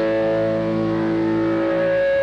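Distorted electric guitar holding one sustained chord that rings on steadily, with a higher tone growing in during the second half.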